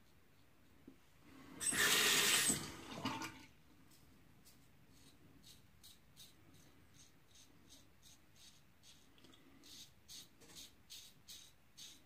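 Water runs for a little under two seconds, about two seconds in. Then a double-edge safety razor with a Gillette Wilkinson Sword blade scrapes through lathered stubble in short, quick strokes, about three a second.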